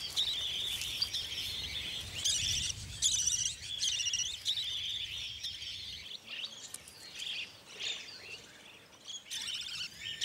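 Budgerigars chirping at the nest: a dense run of quick, high-pitched warbling calls that thins out and grows fainter after about six seconds.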